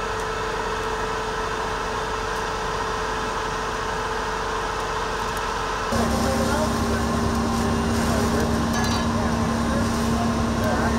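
Fire engine running steadily, a continuous mechanical hum; about six seconds in it changes abruptly to a lower, louder hum.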